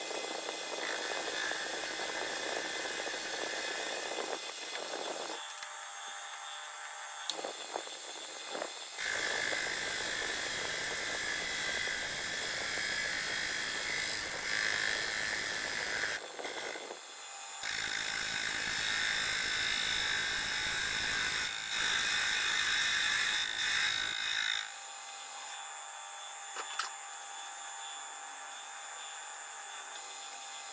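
Metal lathe turning a flywheel blank in speeded-up footage: a steady high whine with cutting hiss, changing suddenly every few seconds at edits and louder through the middle stretch.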